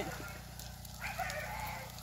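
Oil hissing steadily as food deep-fries in a large pot. About a second in, a rooster crows for about a second over the sizzle.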